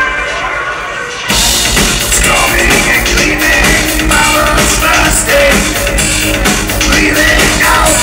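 Dark-wave electronic band playing live in a club, recorded from the crowd: synthesizer chords ring on their own for about a second, then the drums and bass crash back in with a steady driving beat.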